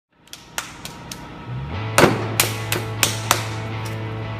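An electric potter's wheel starts up about halfway through and runs with a steady hum. Over it come a run of sharp slaps, one loud and then four lighter ones about a third of a second apart, as a heavy lump of clay is slapped down and patted onto the wheel head.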